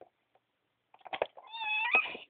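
A couple of light clicks, then a short, high, whining cry in the second half.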